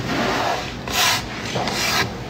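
Hoodie fabric rubbing and brushing against the phone's microphone as the wearer moves right up against it, in a few scratchy bursts, the loudest about a second in.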